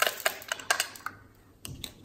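A handful of light, sharp plastic clicks and taps from diamond-painting supplies being handled: the small clear container of leftover resin drills being picked up and moved. There are about seven clicks, with a short lull about halfway through.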